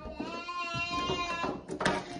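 Munchkin cat giving a long, drawn-out, wavering yowl, the warning call of a cat standoff. It ends in a short, sharp hiss near the end.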